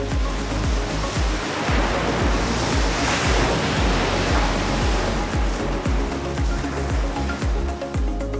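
Background music with a steady beat, over which the rush of ocean surf swells up about a second and a half in, peaks, and fades away again.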